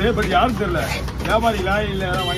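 People talking over a steady background hum, with no clear chopping strikes.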